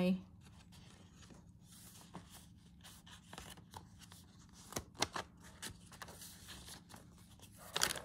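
Paper rustling softly as the pages of a handmade journal are leafed through and turned by hand, with a couple of sharper taps about five seconds in.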